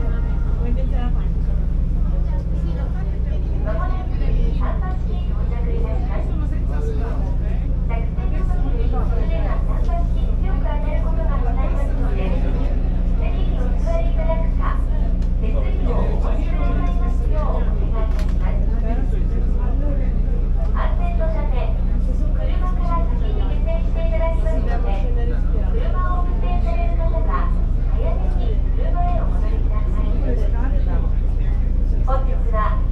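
A ferry's engine running with a steady low drone, and people's voices talking over it.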